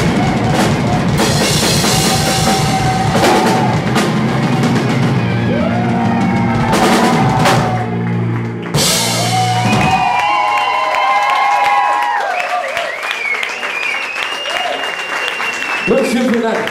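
Live rock band playing: drum kit, electric guitars, bass and vocals together at full volume. About ten seconds in, the drums and bass stop and only higher, wavering sounds carry on.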